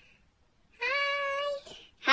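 One high, drawn-out meow-like vocal call from a woman's voice, held at a nearly steady pitch for under a second, about a second in.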